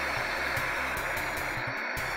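Steady hiss of analogue television static, with a low beat of background music underneath.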